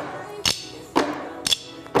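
Several drumsticks striking padded box tops together in single strokes, a steady beat of about two hits a second.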